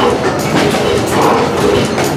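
Large vintage stationary gas engines running together, with a steady, fast rhythmic clatter of valve gear and exhaust beats.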